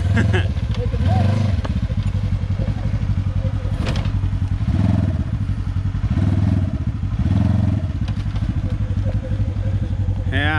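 Polaris side-by-side UTV's engine running and revving in several swells as the machine backs off a log it failed to climb. A single knock comes about four seconds in.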